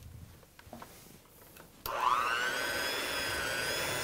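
Electric hand mixer switched on a little under halfway through, its motor whine rising as it comes up to speed and then running steadily, its beaters mixing cake mix, butter and egg in a plastic bowl.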